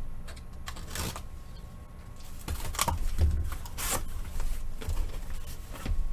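A sealed cardboard shipping case being ripped open and handled: a few short tearing rips of tape and cardboard, about one, three and four seconds in, with dull thumps as the cardboard and the boxes inside are moved.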